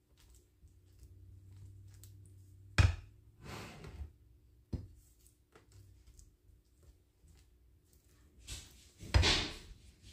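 A spatula spreading thick cake batter in a glass baking dish: soft scraping with three sharp knocks against the dish, the loudest about three seconds in and near the end.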